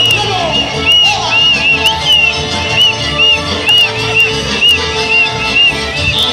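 Litoral folk music playing, in the chamarrita or chamamé style, with a string of short, high chirps that each rise and fall, about two a second.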